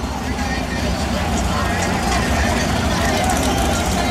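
Drag cars' engines running at the starting line, a steady low rumble, under the chatter of a large crowd.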